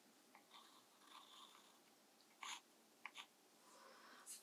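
Faint, short scratches of a pencil drawing on cold-pressed watercolour paper: a few light strokes in the first half, then two brief, slightly louder strokes past the middle.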